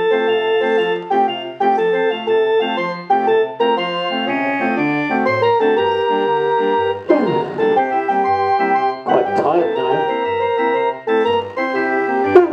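Small hand-cranked barrel organ playing a tune over a steady, repeating oom-pah bass. Two short noises cut across the music about seven and nine seconds in.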